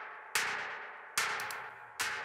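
Electronic snare drum played solo, hitting twice at an even pace with a third hit right at the end; each hit is a sharp crack with a short, fading noisy tail. The snare plays dry, with the Quick Haas fake-stereo delay switched off.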